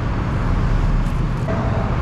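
Steady low rumble of road traffic, with no distinct events standing out.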